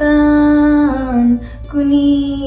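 A girl's voice singing a slow devotional verse in Kashmiri, holding a long note that slides down about a second in, then taking up a new held note near the end.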